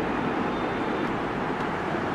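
Steady rushing background noise, even and unbroken, with no distinct events.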